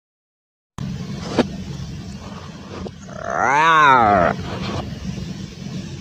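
A steady low hum comes in about a second in. Around the middle, a loud drawn-out wailing cry rises and then falls in pitch over about a second.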